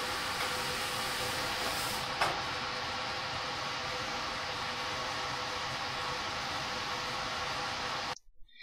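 Fume hood exhaust fan and airflow giving a steady rushing noise with a faint hum in it, with one brief soft knock about two seconds in.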